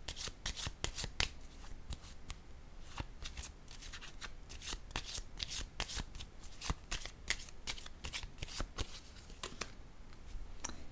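A deck of tarot cards being shuffled in the hands: a run of quick, irregular card clicks and flutters, several a second.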